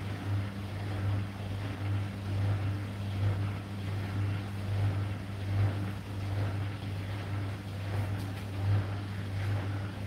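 Hotpoint NSWR843C front-loading washing machine tumbling a load: a steady motor hum with water and laundry sloshing in the turning drum, swelling and easing in a regular rhythm.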